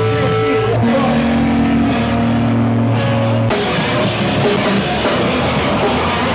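Live rock band at loud volume in a small club: held, distorted guitar notes ring for the first few seconds, then about halfway through the drums and cymbals crash in and the full band plays hard.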